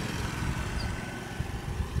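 Low, uneven rumble of background noise with a faint steady high tone running through it.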